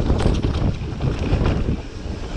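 Wind buffeting the microphone over the rumble of mountain bike tyres rolling on a dirt trail, with frequent short rattles and knocks from the bike over bumps. The loudness dips briefly near the end.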